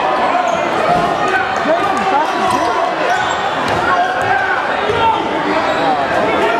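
Basketball bouncing on a hardwood gym floor during play, under the steady talk and shouts of many spectators and players echoing in the gymnasium.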